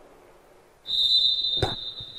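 A referee's whistle gives one steady high blast starting just under a second in and held past the end, with a single sharp thump partway through.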